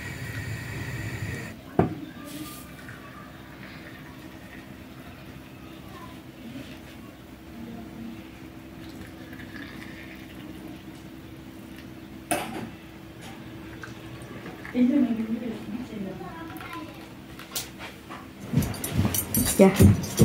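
Turkish coffee being poured from a cezve into small porcelain cups, a soft pouring over a low steady hum, with a couple of sharp clinks of china. Voices come in near the end.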